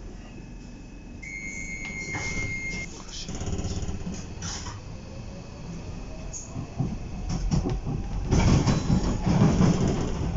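Docklands Light Railway B07 stock train pulling out of a station. A steady electronic warning tone sounds for about a second and a half shortly after the start. Then the traction motors give a whine that rises in pitch as the train accelerates, and wheel and track rumble grows loud near the end.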